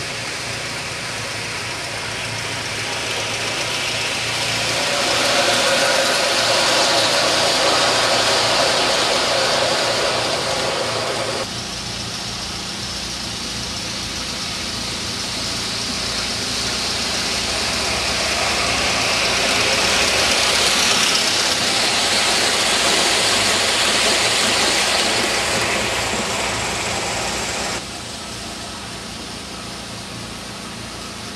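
Aster S2 live-steam model of the Pennsylvania Railroad steam-turbine locomotive running on garden track, a steady hiss of steam with no chuffing. The hiss swells twice as the engine draws near, and breaks off suddenly at two cuts, about a third of the way in and near the end.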